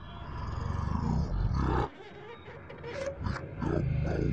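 Deep, growling roar from a horror-film soundtrack. It swells for about a second and a half and cuts off sharply, then a second growl comes near the end.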